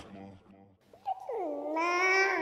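A faint fading sound, then about a second in a wavering pitched note with overtones slides down and settles into a held tone, the opening of a song.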